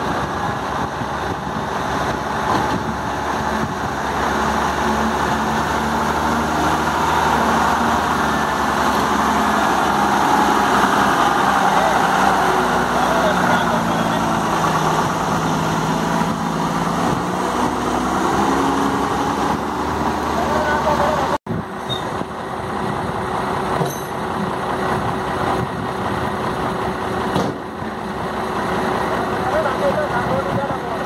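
Diesel engine of a Tata tipper truck running under load as it drives, its pitch rising and falling. There is an abrupt cut about 21 seconds in, after which a truck engine runs on more evenly.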